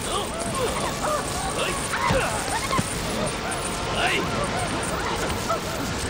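Women's short shrieks and cries during a struggle, many brief rising and falling yelps one after another, over a steady hiss of pouring rain.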